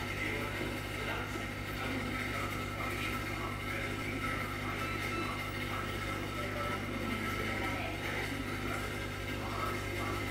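Aquarium pump running with a steady low electrical hum.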